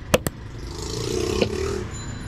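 A plastic mug of puffed rice is shaken to mix jhal muri, with two sharp knocks of the mug just after the start. A rushing noise with a low hum then swells and fades toward the end.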